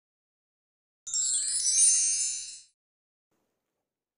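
A short sparkling chime sound effect, a shimmer of high bell-like tones sweeping upward, starting about a second in and lasting about a second and a half.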